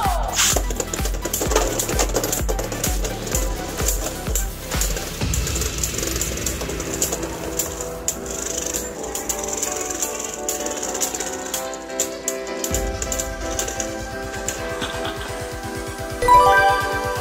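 Background music with a steady beat over the rapid clicking and clattering of two Beyblade Burst spinning tops striking each other in a plastic stadium.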